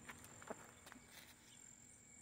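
Near silence: faint outdoor ambience with a thin, steady high-pitched tone and a faint click about half a second in.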